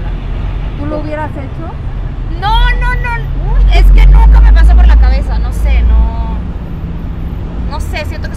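People talking at the roadside over a steady low vehicle hum. A loud, low motor-vehicle rumble swells up about two and a half seconds in and fades out around six seconds.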